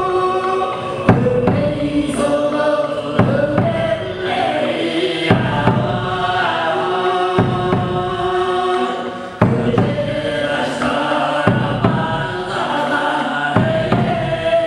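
Tuvan ensemble music: low chanted throat-singing over bowed horsehead fiddles such as the igil, with a large laced hand drum struck every second or two.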